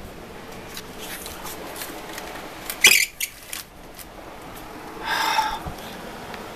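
Steady noise of heavy wind-driven rain from a thunderstorm, with a sharp knock about three seconds in and a short high-pitched sound about five seconds in.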